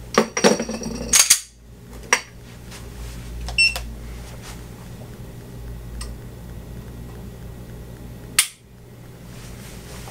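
FN 509 9mm pistol being dry-fired against a Lyman digital trigger pull scale. A few handling clicks come in the first two seconds, a short electronic beep a little over three and a half seconds in, then one sharp click about eight and a half seconds in as the trigger breaks, at a measured 6 pounds 9 ounces.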